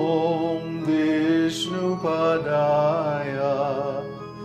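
A man chanting a Sanskrit Vaishnava prayer in a slow, drawn-out melody to his own electronic keyboard accompaniment, which holds steady notes beneath the voice.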